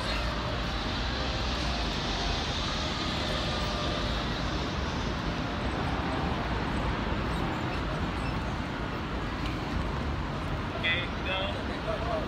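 Steady outdoor urban background noise with faint voices, and a brief high-pitched voice near the end.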